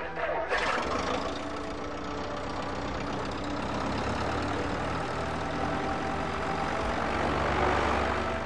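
An engine running steadily. Its noise builds up about half a second in and grows a little louder near the end.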